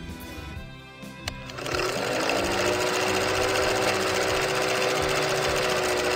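Film projector running with a steady mechanical clatter and a low steady tone, starting about two seconds in after a couple of sharp clicks.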